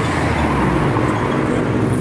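A car passing on the street: a steady rush of engine and tyre noise, with the deepest rumble strongest in the first half second.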